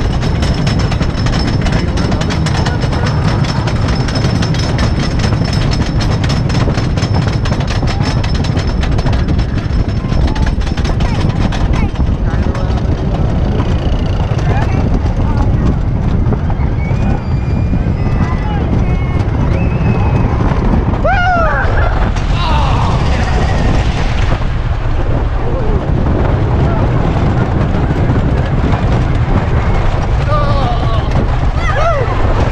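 Wooden roller coaster train on the chain lift: rapid, continuous clicking over a steady low rumble. The clicking stops about a third of the way in as the train levels out at the top, leaving the rumble of the train rolling on the wooden track with riders' shouts and voices.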